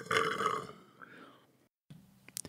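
A man's drawn-out, rough-voiced exhale, trailing away within the first second.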